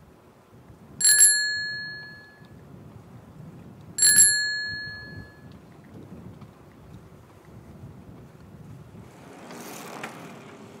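Bicycle bell rung twice, about three seconds apart, each a single bright ding that fades away over a second or so. A short rush of noise follows near the end, over faint low wind noise.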